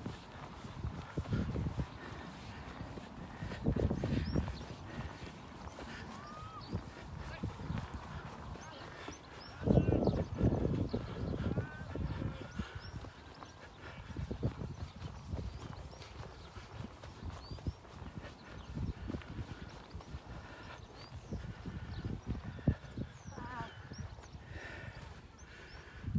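Wind rumbling on the microphone in gusts, loudest about four seconds and ten seconds in, with footsteps in loose sand and a few faint high chirps.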